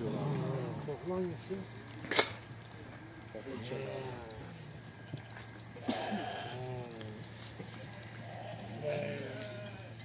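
A flock of sheep bleating in a pen, with several wavering calls from different animals every couple of seconds. A single sharp knock comes about two seconds in.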